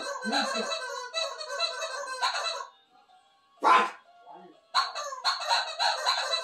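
Voices and music, going quiet about three seconds in apart from one short noisy burst, then picking up again near five seconds.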